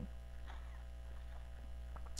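Steady low electrical mains hum, with only faint sounds of a man sipping water from a stainless steel bottle.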